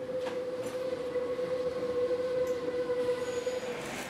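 Metro train running, heard from inside the passenger car: a steady rushing rumble with one high, steady whine held over it that stops just before the end.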